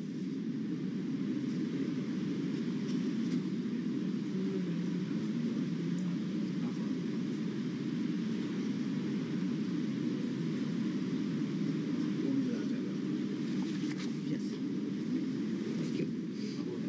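Steady low rumbling background noise without distinct events.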